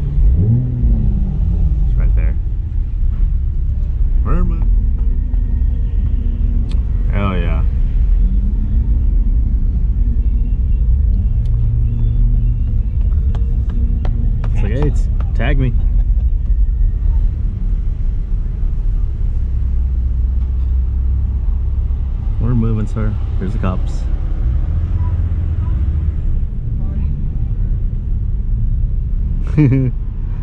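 Low, steady rumble of a car crawling in slow traffic, heard from inside its cabin, with short bits of people talking several times.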